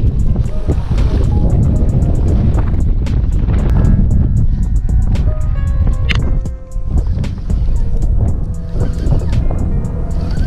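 Strong wind buffeting the microphone in a deep, steady rumble, with background music playing over it.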